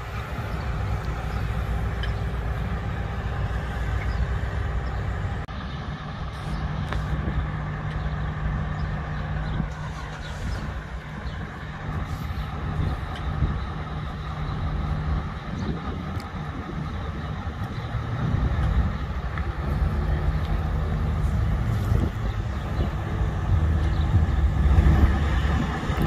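Large diesel engine of a mobile crane running steadily under load while it lifts a rooftop unit. The engine note changes about six seconds in and grows louder near the end.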